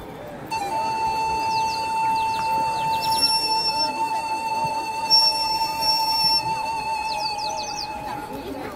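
A single steady, high whistle tone, held for about seven seconds with a slight waver near the end. Short, quick rising chirps sound above it twice.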